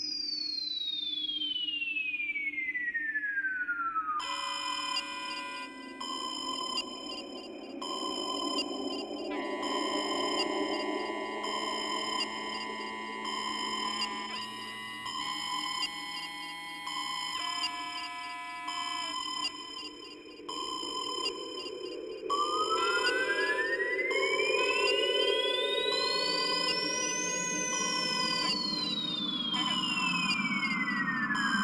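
Beatless intro of a 1994 Goa trance track, all synthesizer. A pure tone glides down in pitch over the first few seconds, then layered held synth notes switch on and off in steps over a slowly swelling hissy pad. Near the end a tone sweeps up and back down.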